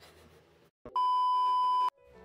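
A loud, steady electronic bleep, a censor-style sound effect added in editing, lasting about a second and cutting off sharply. It starts just under a second in, after faint room tone and a brief click.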